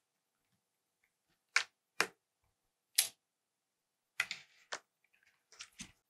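Short sharp clicks and knocks from handling a smartphone and its charging cable on a tabletop: three separate clicks, then a quicker cluster of lighter clicks and taps.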